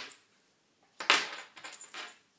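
A short metallic jingle and clatter about a second in, followed by a few light clicks, as a swimsuit with small metal embellishments is handled.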